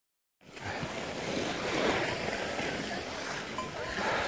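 Wind noise on the microphone and the steady hiss of skis sliding over packed snow, starting abruptly about half a second in.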